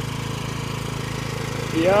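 Motor hoe (walk-behind rotary tiller) engine running steadily with a low, even drone. A man's voice starts near the end.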